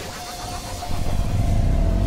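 Electronic intro sound design: a low rumble with a held tone, then a rising sweep building near the end, leading into a dance-music beat.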